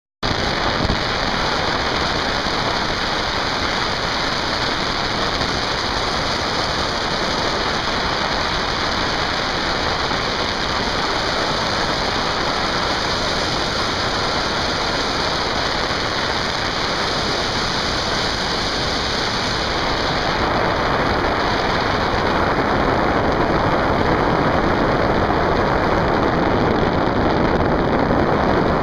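Steady rushing wind on the microphone of a camera flying through the air, changing in tone about twenty seconds in.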